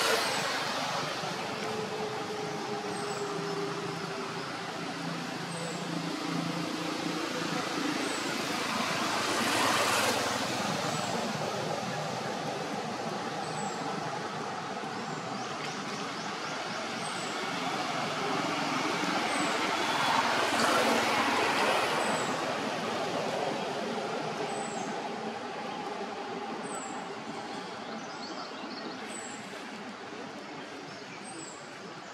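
Background road traffic: a steady rush of passing vehicles that swells up and fades away twice, about ten seconds in and again around twenty seconds. Faint short high chirps repeat every few seconds.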